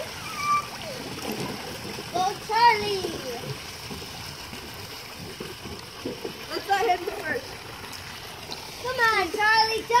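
Pool water splashing and lapping close by, over a steady rush of water pouring off a pool slide. Children's high voices call out several times, loudest near the end.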